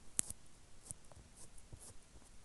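Faint, close-up ASMR clicks and ticks from hands working at the mouth, with one sharp click about a fifth of a second in and a few softer ticks after it.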